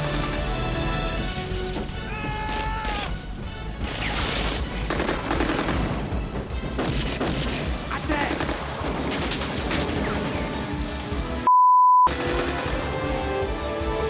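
Action-film soundtrack: dramatic orchestral score mixed with explosion bangs and fire effects. Near the end a single steady beep of about half a second replaces all other sound, a censor bleep.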